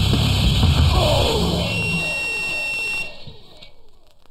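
The closing seconds of a heavy distorted guitar band's song. The full band sound gives way to a falling pitch slide and then a single high steady whine of guitar feedback, which cuts off about three seconds in; what remains fades away.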